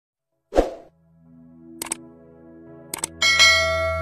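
Intro sound effects: a thump about half a second in, a quick double click near two seconds and another near three, then a bright ringing chime with a low hum swelling under it.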